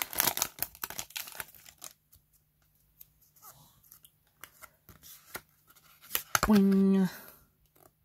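Foil booster-pack wrapper crinkling and tearing open for the first two seconds, followed by quieter handling of the cards with a few soft clicks and rustles.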